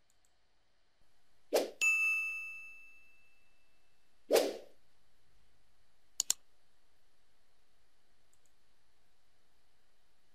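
Subscribe-button animation sound effects: a whoosh with a bell ding that rings out for about a second, a second whoosh a few seconds later, then two quick mouse-click sounds.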